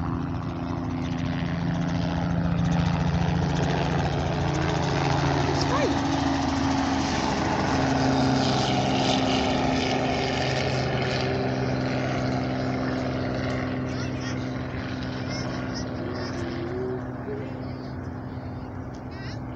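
Small tour helicopter lifting off and flying away: a steady rotor and engine drone with several low tones. It grows louder over the first few seconds, then fades slowly through the second half.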